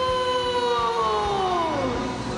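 A ring announcer's amplified voice drawing out the last syllable of a fighter's name in one long call, held and then falling slowly in pitch, over arena music and crowd noise.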